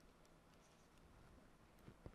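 Near silence with the faint taps and scratches of a stylus writing on a tablet screen, and a soft knock near the end.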